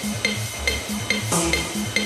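Classic techno playing: a four-on-the-floor kick drum at about 140 beats a minute under a high ticking percussion line. About one and a half seconds in, a brighter clap-like hit joins on every other beat.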